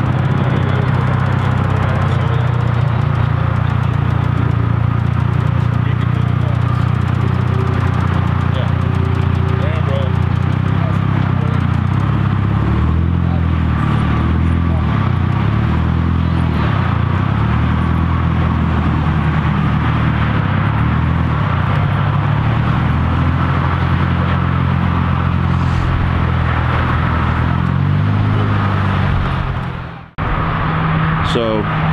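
Car engine running at low revs, steady at first, then rising and falling in pitch over the second half as the car is driven slowly. Voices are heard faintly behind it.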